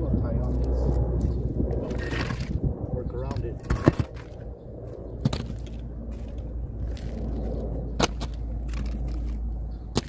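Loose asphalt shingle pieces and concrete pavers being picked up and set down on a shingle roof, giving a few sharp knocks (the loudest about four seconds in, others near five and eight seconds) and scraping. A low steady rumble runs under the first few seconds.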